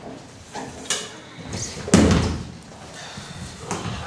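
Metal stools knocked about and set down on a stage floor as several people drop to sit on the floor: a few sharp knocks, with the loudest thump about two seconds in.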